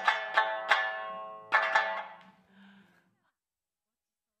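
Okinawan sanshin music: quick plucked notes with a slide in pitch near the start, the last notes dying away about two and a half seconds in.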